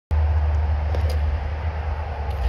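Idling vehicle engine: a steady low rumble, with a couple of faint clicks about a second in.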